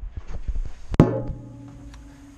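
Handling noise from a GoPro camera being positioned and set down on a hard surface: a run of small knocks, then one loud sharp knock about halfway through. A low steady hum follows.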